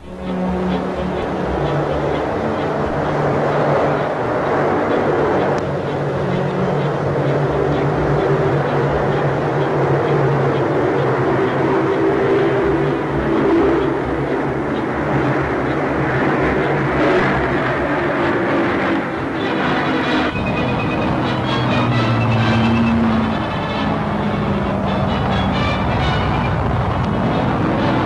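Engines of a four-engined Short Sunderland flying boat running with a loud, steady drone as the aircraft gets under way on the water, dipping briefly about twenty seconds in.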